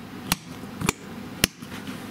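Three sharp knocks on the closed hard plastic Pelican 1300 case, about half a second apart.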